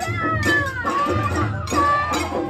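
Japanese festival float music (hayashi): drum and bell strokes about twice a second under a high melody that slides up and down in pitch.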